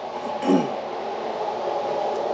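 A steady mechanical running noise, with a short lower sound about half a second in.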